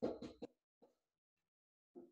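Dry-erase marker squeaking on a whiteboard in a few short strokes, then stopping about half a second in; a brief faint blip comes near the end.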